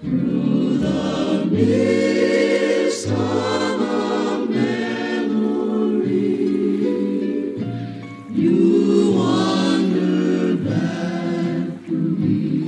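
A choir singing a romantic love song in sustained, blended harmony. The voices ease off briefly about eight seconds in, then swell back in loudly.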